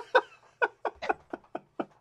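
A person laughing in a run of short, breathy bursts, about four a second, fading away toward the end.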